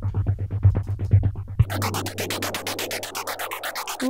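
A deep house track playing back: a pulsing bass groove until about a second and a half in, when the bass drops out and a filtered white-noise lift takes over. Sidechain compression chops the noise into a fast, even pulse.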